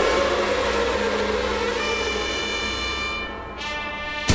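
Orchestral drama background score with long held notes. The sound fades about three and a half seconds in, and a new held chord enters near the end.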